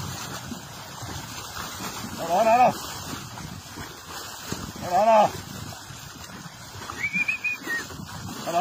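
Men's drawn-out shouted herding calls of "vino" to cattle, two loud calls a few seconds apart and a shorter high call near the end.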